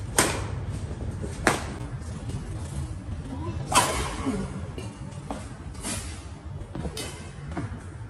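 Badminton rackets striking a shuttlecock in a rally: about five sharp hits, one to two seconds apart, the loudest a little under four seconds in, over a steady low rumble.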